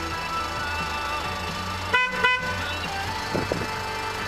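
Two short honks of a van's horn about a third of a second apart, over background music.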